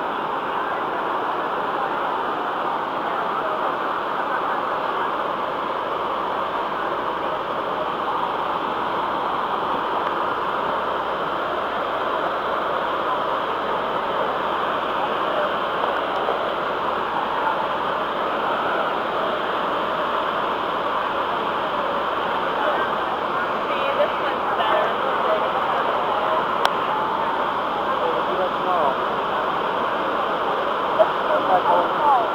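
Niagara's American Falls pouring onto the boulders at its foot: a steady, unbroken rush of falling water. A few faint sounds rise above it near the end.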